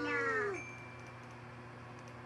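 A high cartoon-character voice from a Teletubbies episode, played through laptop speakers, holds one drawn-out call that falls in pitch and stops about half a second in. After it there is only a steady low hum.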